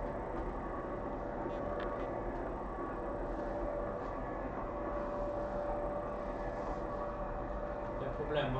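Steady room noise in a hall: a low hum with a faint steady tone and hiss, and a faint click about two seconds in.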